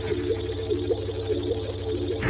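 Electronic intro sting for a video: a steady low drone under a sustained mid-pitched tone, with short blips pulsing about three times a second.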